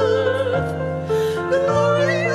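Two women singing a Christmas hymn duet with vibrato, over organ accompaniment holding sustained chords that step from note to note.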